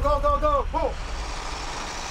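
A man's loud, drawn-out shout in the first second, breaking off once, over the steady low rumble of an idling vehicle engine.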